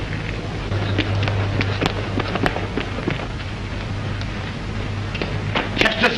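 Surface noise of an early-1930s optical film soundtrack: a steady hiss with scattered crackles and clicks, over a low hum that comes in about a second in.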